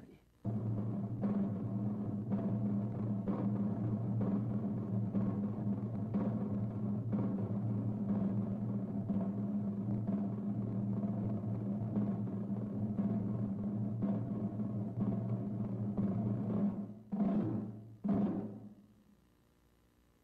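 A long, steady low drum roll that ends with two separate strokes near the end: the call to attention before a public proclamation.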